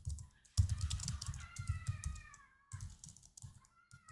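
Typing on a computer keyboard in a quick run of keystrokes. Over it, from about a second and a half in, a drawn-out pitched tone falls slowly for about a second, and a shorter tone comes near the end.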